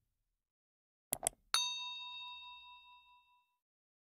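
Two quick mouse-click sound effects about a second in, then a single bell ding that rings out and fades over about two seconds, matching the notification bell of a subscribe animation.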